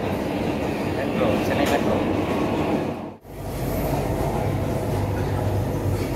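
Metro train running, heard from inside the carriage: a steady rumble of wheels and motors on the track. The sound drops out abruptly about three seconds in, then the steady low rumble carries on.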